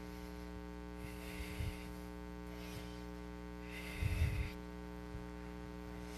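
Steady electrical mains hum from the sound system, with two brief soft thumps and rustles, about a second and a half in and again near four seconds.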